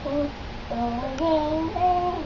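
A young boy's voice reciting a picture book to himself in a sing-song chant: held, high notes that step up and down in pitch, with a short pause about half a second in.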